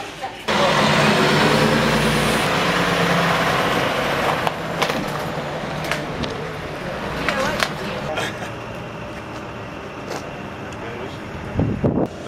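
A truck engine running steadily: a low hum under a broad hiss that comes in suddenly about half a second in, loudest for the first couple of seconds and then slowly fading.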